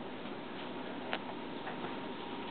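Steady hiss of a quiet room, with one short click a little over a second in and a fainter click near the end.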